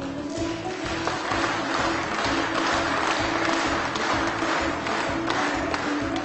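Audience applause starting as the award is handed over and continuing throughout, over music with steady sustained notes and a regular low beat.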